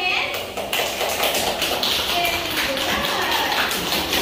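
A group of young children and their teacher clapping their hands, many quick claps overlapping, with a voice faintly over them.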